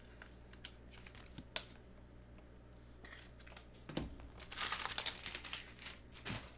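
Small taps and clicks of cards being handled. About four and a half seconds in comes a brief burst of crinkling from a foil trading-card pack wrapper.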